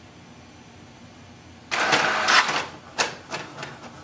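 HP DeskJet 3700-series inkjet printer starting a print job. Its mechanism sets off with a loud burst of noise lasting about a second, starting a little under two seconds in, then a run of sharp clicks as it draws in a sheet to print.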